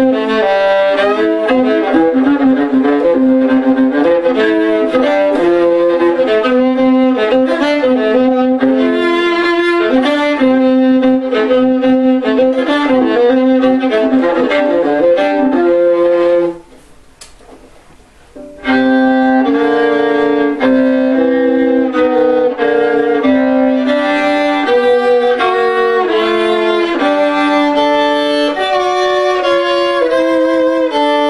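Kogut five-string fiddle (Engelmann spruce top, curly maple back, Prim strings with a viola C string) bowed in a solo fiddle tune of quick, changing notes. The playing stops for about two seconds just past the middle, then carries on.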